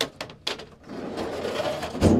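A steel flat-file drawer being pushed shut on its runners: a few light clicks, then a rolling metal rumble that grows louder over about a second, ending in a thud as the drawer closes.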